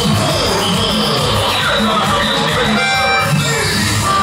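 A live band playing, with keyboards and a drum kit, and a melody line that moves up and down; a bright held note sounds about three seconds in.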